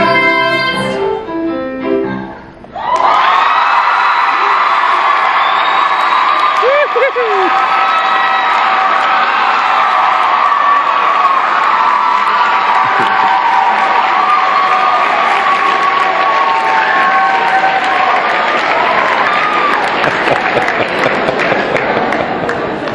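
A singer and piano finish a song, cutting off about two and a half seconds in. Loud audience applause and cheering with whoops follows and runs on steadily.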